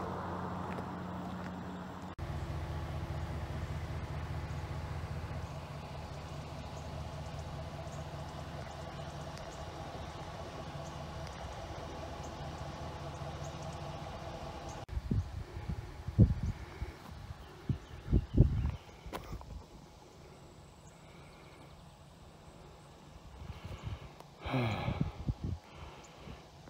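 A steady low mechanical hum with a few even tones, which cuts off suddenly about fifteen seconds in. A few loud low thumps follow, then quieter background.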